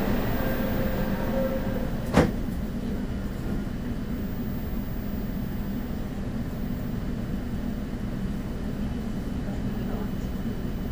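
Seoul Metro Line 4 subway train running, heard from inside the car: a steady low rumble, with a single sharp knock about two seconds in.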